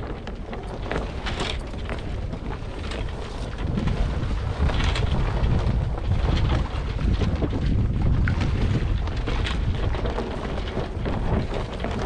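Wind buffeting the microphone aboard a sailing yacht, heavier from about four seconds in. Scattered clicks and knocks come from the winch and deck gear as the reefing line is hauled in.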